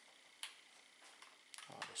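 Near-silent handling of a cable plug at a plastic solar LED lantern: one sharp light click about half a second in, then a few small clicks near the end.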